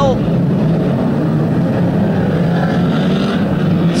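Engines of several 2-litre banger race cars running together in a steady, loud drone as the cars circulate on the track.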